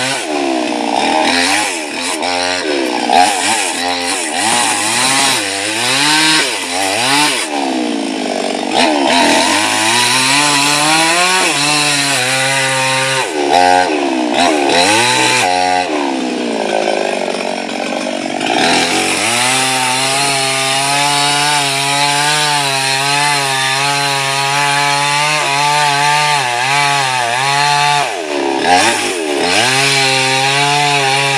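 Gasoline chainsaw cutting through a felled coconut palm trunk. Its engine pitch falls and rises over and over as the chain bites into the wood in the first part, then holds steady for most of the last ten seconds before dipping again near the end.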